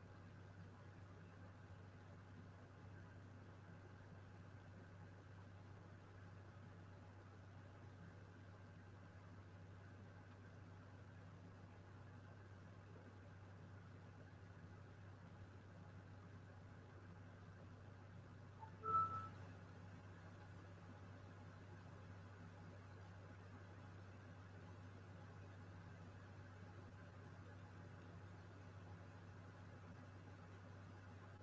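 Near silence: a steady low hum of line or room noise, with one brief faint sound about two-thirds of the way through.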